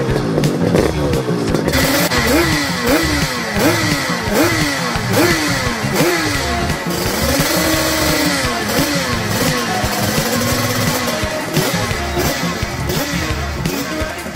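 Two-stroke motorcycle engine revving hard, its pitch climbing and then dropping sharply again and again, about once a second, then rising and falling in a few slower sweeps. Music plays underneath.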